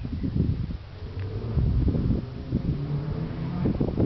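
Wind rumbling on a handheld camera's microphone, with irregular soft thumps of footsteps on brick paving. A low steady hum sounds through the second half.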